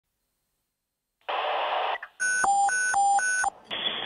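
A short burst of radio static, then an electronic two-tone alert that switches between a high and a low pitch about four times a second for just over a second. Near the end a thin, phone-line hiss begins, leading into an emergency-call voice.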